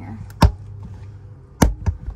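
Two sharp clicks about a second apart, with a smaller one just after the second, as the carpeted side trim panel of a Tesla Model Y center console is pulled out by hand: its plastic retaining clips snapping as they let go.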